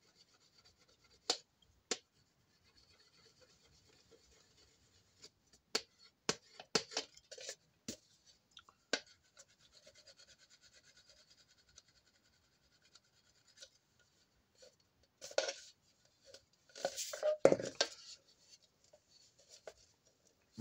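A hand-held rod rubbing and scraping over the thin sheet metal of a phonograph horn while its dents are pushed out. It makes faint scratching strokes with scattered sharp clicks and taps of the metal, and louder bursts of scraping and knocking near the end.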